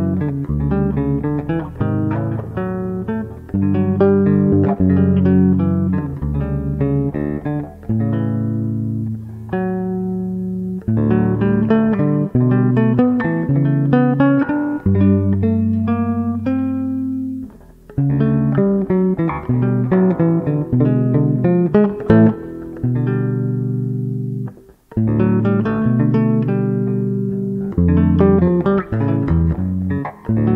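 Höfner Ignition Club Bass, a short-scale electric bass, played solo fingerstyle: a melodic line of plucked notes with chords mixed in. The playing pauses briefly a little past halfway and again a few seconds later.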